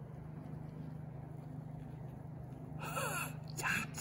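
A steady low hum, then about three seconds in a man's voice lets out a delighted exclamation, 'ja'.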